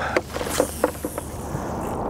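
Boat motor running with a steady low hum under wind and water noise while trolling. A few short clicks come near the start, and a high hiss rises about half a second in and fades.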